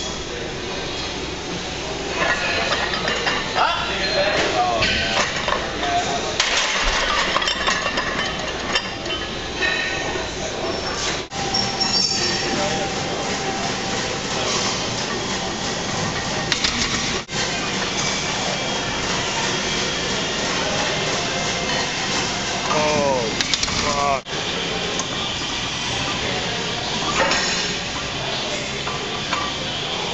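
Weight-room noise: indistinct voices over a steady background din, with metal clinks of a loaded barbell and steel plates.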